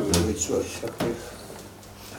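Speech in a small meeting room trails off in the first half-second, with a short knock at the start and another about a second in, then quiet room tone.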